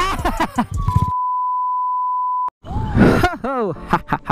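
A censor bleep: one steady, high-pitched electronic tone lasting about a second and a half that cuts off abruptly. Men's voices are heard just before it, and an exclamation follows it.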